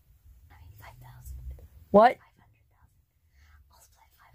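A quiet room with a low hum and faint low voices, broken about two seconds in by a single short 'What?' spoken with a sharply rising pitch.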